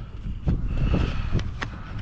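Gloved hands working the plastic screw cap off a gallon jug of de-icer: a few scattered clicks and plastic handling noises over a steady low rumble.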